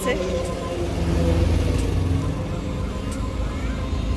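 A large bus driving past close by, its engine rumble loudest a second or two in and then easing as it goes away.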